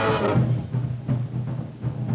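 Swing big band drum break on a 1940s-style recording: a drum kit plays a run of tom-tom and bass drum strokes as the horn section's chord dies away at the start.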